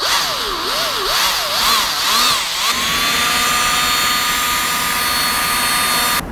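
A cordless drill with a large bit boring into a swimbait's foam head harness. The motor's pitch rises and falls for the first two and a half seconds or so, then holds steady.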